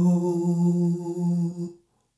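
A single voice holding one long hummed note at a steady pitch, which stops near the end.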